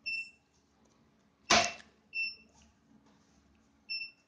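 Short high beeps from an SHR/IPL hair removal machine, one about every two seconds, after treatment has been started. There is one loud, sharp snap about a second and a half in, and a low steady hum underneath.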